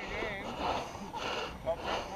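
Faint, distant shouts and calls from footballers across an open ground, with no close voice.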